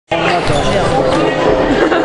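Voices of players and onlookers echoing through a gymnasium, with a basketball bouncing on the court floor.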